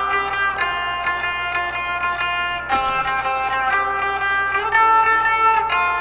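Les Paul-style electric guitar picked with a clean tone, its plucked notes ringing on over one another.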